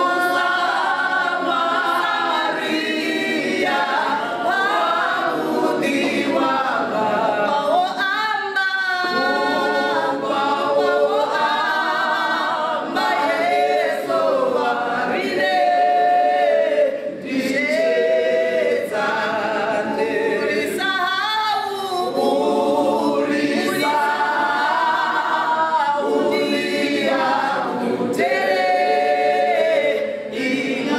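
Four women singing a cappella in harmony, several voices moving together in continuous phrases with short breaks for breath.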